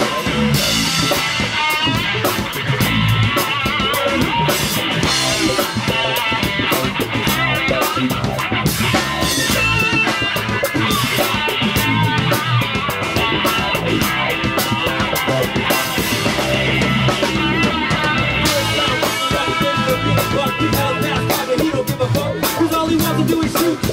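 Live rock band playing an instrumental passage: electric guitar, bass guitar and drum kit, loud and steady, with drum and cymbal strokes keeping the beat and no vocals.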